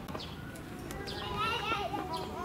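Background chatter of people's voices, including high-pitched children's voices talking and calling, with no one speaking clearly.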